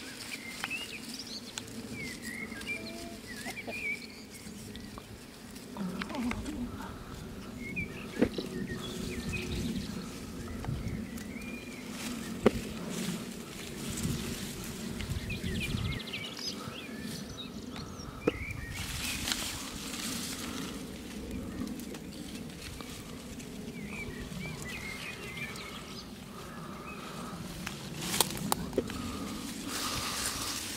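Small birds chirping on and off while strawberry leaves rustle under the hands, with a couple of sharp clicks a few seconds apart.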